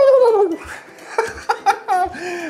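A turkey gobble: a loud, wavering call that falls in pitch and lasts about half a second, followed by a few short, sharp gobbling notes.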